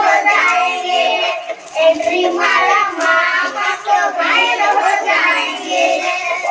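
Several children singing together, a chanted song in short phrases.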